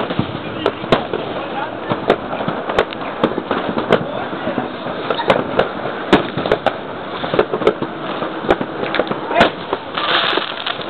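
Fireworks and firecrackers going off: sharp bangs and cracks at irregular intervals, about one or two a second, over a continuous background of more distant fireworks.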